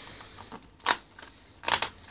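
Cardboard advent calendar door being pried open by hand: a sharp click about a second in, then a louder double snap near the end as the perforated cardboard gives way.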